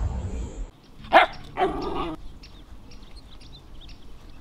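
A short rushing noise, then a dog barking twice, about a second in and again half a second later. Faint bird chirps follow.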